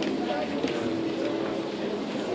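Background chatter of many people in a large exhibition hall, a steady mix of overlapping voices with no clear words.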